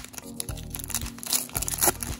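Foil wrapper of a baseball card pack crinkling as it is pulled open and peeled back off the cards, over background music.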